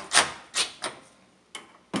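Cordless driver with a socket run in short trigger bursts to snug down hood-latch bolts slowly: three short sharp bursts, a brief pause, then two more near the end.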